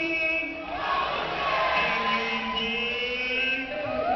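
A group of voices singing or chanting together, holding long notes, over audience noise.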